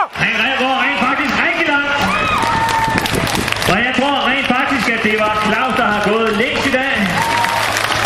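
A man's voice over a public-address loudspeaker, talking without pause, with the crowd clapping, heaviest about two to four seconds in.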